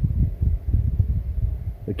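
Low, uneven rumble of wind buffeting the microphone, with no spray hiss.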